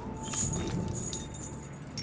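Heavy metal chain rattling and clinking in scattered short jingles over a low rumble.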